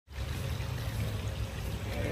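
Steady rushing background noise like running water, with a low, even hum underneath.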